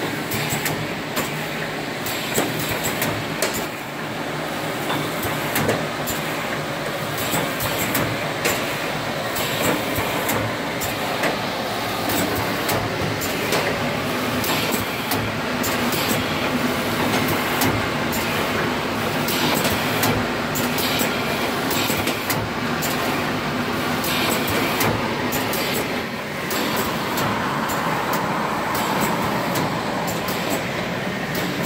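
INT-20 side seal shrink-wrapping machine running: a steady mechanical clatter of conveyors and sealer, broken by frequent sharp clicks and knocks.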